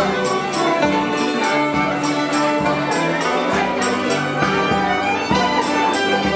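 Live fiddle playing a traditional Belarusian padespan (pas d'Espagne) dance tune over lower accompaniment, with a steady beat of about two strokes a second.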